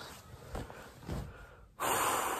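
A man breathing close to the microphone: a couple of soft breaths, then near the end a sudden loud breath blown out that fades away.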